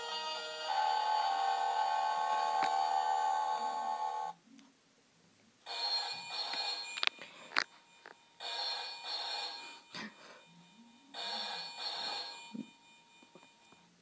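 Electronic Deal or No Deal tabletop game playing a held electronic tune through its small speaker, then three bursts of telephone-style ringing with short gaps: the banker calling in with an offer.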